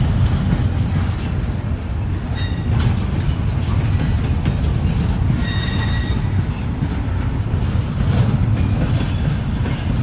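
Double-stack intermodal container cars rolling past close by: a steady, loud low rumble of wheels on rail, with brief high-pitched wheel squeals about two and a half seconds in and again around six seconds.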